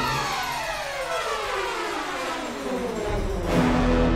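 Orchestral film score: the orchestra slides downward in pitch in one long falling sweep over about three and a half seconds. Then a loud full-orchestra chord with a held low note comes in near the end.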